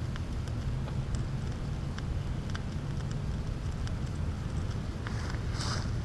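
Wind rumbling steadily on the microphone, with faint scattered ticks over it.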